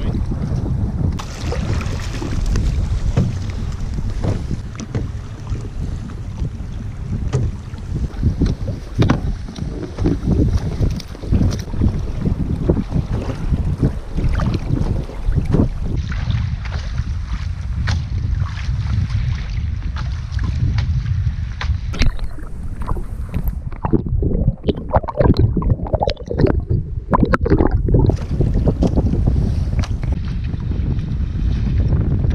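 Wind buffeting the microphone in a low, constant rumble, with choppy sea water slapping and splashing against a kayak in many short, irregular knocks.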